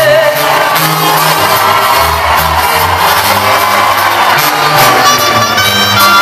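Live band playing an instrumental break of a Latin ballad in a large hall, with the crowd shouting and cheering. A held sung note with vibrato ends right at the start.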